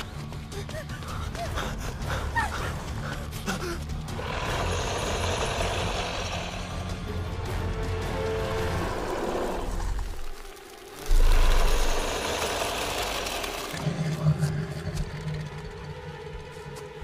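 Suspenseful film score that swells, drops out abruptly for about a second, and comes back with a sudden loud low hit about eleven seconds in, then settles into a low held tone.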